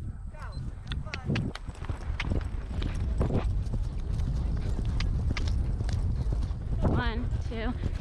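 Hoofbeats of a ridden horse on grass, an irregular series of knocks, over a heavy rumble of wind on the microphone. A voice comes in near the end.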